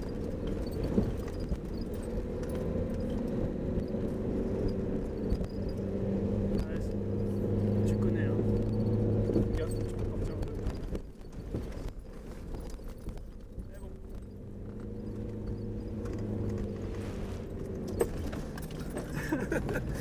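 Jeep Cherokee XJ's 2.1 L four-cylinder turbodiesel heard from inside the cab, pulling under load. It grows louder for a few seconds, eases off suddenly about halfway through, then builds again. Occasional sharp knocks come from the vehicle jolting over rough ground.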